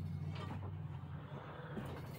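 Creaking and a couple of light knocks, one about half a second in and one near the end, as a man handles things and walks on the trailer floor, over a steady low hum.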